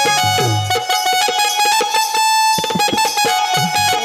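Electronic keyboard playing an instrumental passage in a plucked, mandolin-like tone, one high note held for most of the time, over a repeated low beat.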